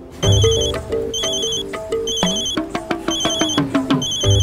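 Mobile phone ringing with a musical ringtone: a short tune that starts with a low thump, over a trilling ring that sounds about once a second.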